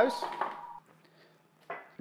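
A single held whistle-like note from a short music jingle, ending just under a second in and leaving near silence.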